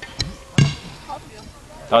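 A brief vocal sound from a young person, a short exclamation or laugh with no clear words, just after half a second in. A light click comes just before it.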